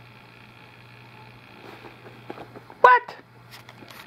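A steady low hum, then nearly three seconds in one short, high-pitched vocal squeal from a baby taking her first taste of spoon-fed puree.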